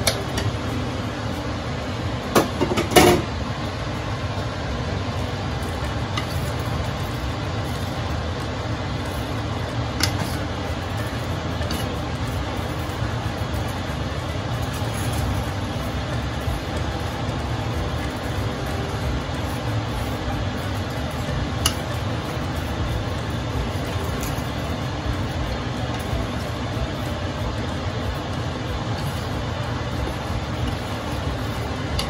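Vegetables being tipped into a large aluminium pot and stirred with a wooden spatula, over a steady low rumble. A few sharp knocks against the pot come between two and three seconds in, and a few faint ticks follow later.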